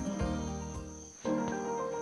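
Background instrumental music with shifting notes and a steady high-pitched tone underneath; the music breaks off briefly about a second in and then resumes.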